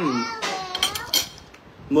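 Metal cutlery clinking against ceramic plates and bowls: a handful of quick, sharp clinks in the first second, with talking around them.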